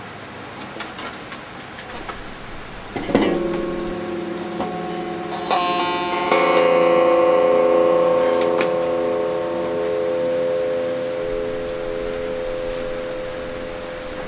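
Amplified guitar strings struck about three seconds in and again a few times over the next few seconds, sounding chords that ring on for several seconds and slowly fade. The last and loudest strike comes at about six and a half seconds.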